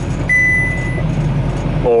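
Semi-truck cab interior at highway speed: a steady low engine and road drone. A single high electronic beep sounds for just under a second near the start.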